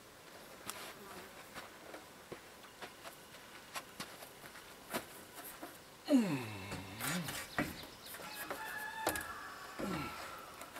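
Light scattered knocks and rattles as a framed solar panel is handled and lifted onto a wooden rack. About six seconds in comes a loud, falling, voice-like cry lasting about a second and a half.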